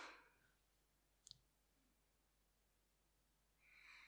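Near silence in a small room: a laugh dies away at the start, a single faint click comes about a second in, and a soft breath is heard near the end.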